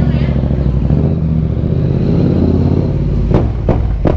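Yamaha MT-07's parallel-twin engine running at low speed, its pitch rising and falling a little as the throttle is worked. Two sharp knocks come near the end.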